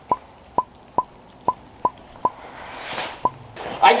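A string of seven short, pitched pop sound effects, about two a second with a longer gap before the last, laid over a stop-motion edit. A brief rising whoosh comes near the end.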